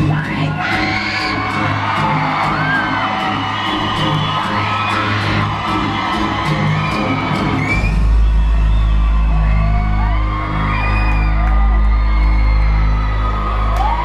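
Live pop music played loud through an arena sound system, heard from among the audience, with short whoops and screams from the crowd over it. A deep, steady bass comes in a little over halfway through.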